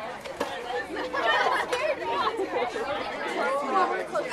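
Background chatter of several young people talking at once, with no one voice standing out.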